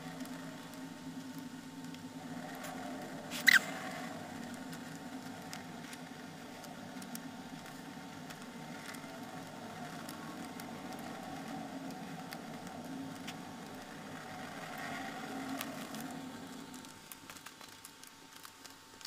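Soft handling sounds of fabric-covered paper hexagon pieces being turned and folded during hand sewing, small faint ticks and rustles over a steady low hum, with one sharp short snap about three and a half seconds in.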